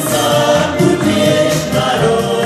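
Live band music: several male voices singing together over electronic keyboards.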